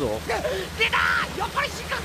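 Anime character dialogue in Japanese over a steady low background drone.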